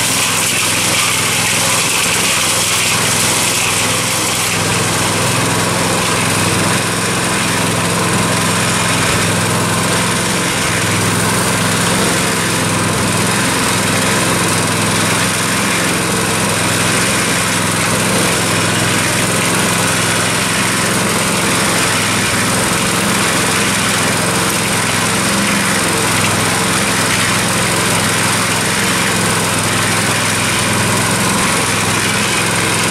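Small Harbor Freight gasoline engine running steadily at a constant speed, driving a cement mixer drum that is turning a batch of concrete.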